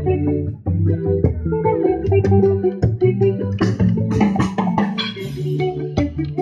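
Live band music: an amplified guitar and bass guitar playing a busy, repeating line of plucked notes, with sharp hand-drum strokes on a conga.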